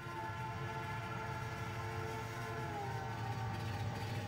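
Cartoon train sound effect: a steady low rumble under a held, horn-like chord whose pitch dips slightly about three seconds in.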